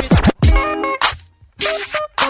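Hip hop track breaking into a stop-start passage: short chopped bursts of beat and notes with brief gaps between them, and DJ scratch-style cuts.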